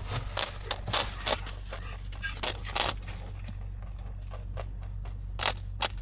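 Rabbit gnawing on a crunchy treat stick held out to it: short, sharp crunching bites come in small clusters, about a second in, around two and a half seconds in, and again near the end.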